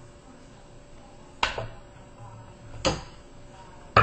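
Two sharp knocks about a second and a half apart, over a faint steady hum: a paintball marker being lifted off a plastic postal scale and set down on a wooden table.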